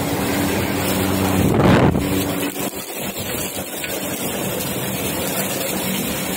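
Steady rushing noise with a low hum from a stall kitchen's wok stoves. It swells loudest about a second and a half in, then eases back.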